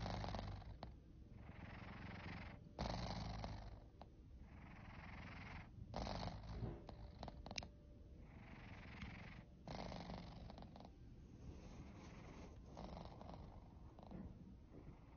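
A sleeping black-and-white cat breathing noisily through its open mouth, a rough sound on each breath, about one breath every three seconds over a steady low rumble.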